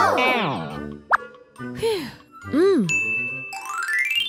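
Children's cartoon background music, over which a character makes about three short wordless hums that rise and fall in pitch. Near the end, a quick rising run of chime-like notes.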